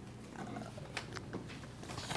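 Quiet meeting-room pause over a steady low hum, with a faint murmured voice about half a second in and a few light clicks or taps after it.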